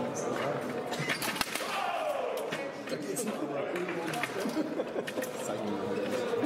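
Indistinct voices talking in a large, echoing hall, with scattered light clicks and one sharp knock about a second and a half in.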